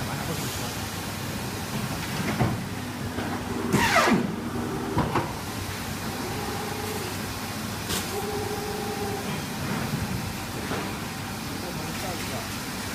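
Workshop noise at a guillotine paper cutter: a steady hiss and hum with several knocks as stacks of paper are handled on the table, and a loud falling squeal just before four seconds in.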